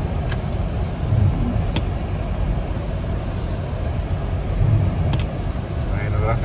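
Steady low rumble and hiss inside a car driving slowly through rain on a wet, flooded street, with a few sharp ticks scattered through it.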